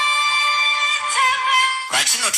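Music: a long held, voice-like note with many overtones, shifting slightly lower in pitch about a second in.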